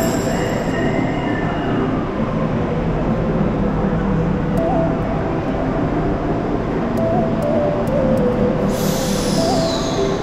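Rome Metro train running through an underground station: a steady rumble with a wavering motor whine. Near the end a high screech falls in pitch.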